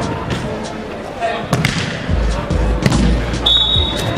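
Five-a-side football on an artificial pitch: players shouting and the sharp thuds of the ball being kicked, two of them standing out in the middle of the stretch. A steady low bass comes in about halfway, and a short high steady tone sounds near the end.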